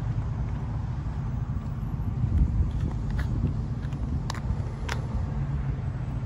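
Vehicle engine idling as a steady low rumble, with two sharp clicks about four and five seconds in.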